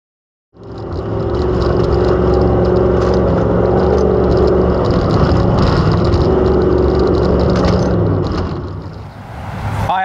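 Engine of a 1968 Ford Bronco off-road race truck running steadily at speed on a dirt track, heard from inside the cab with knocks and rattles from the rough ground. It fades out near the end.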